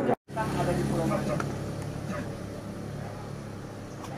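Faint voices of a group of people talking in the background over a steady low hum that slowly fades.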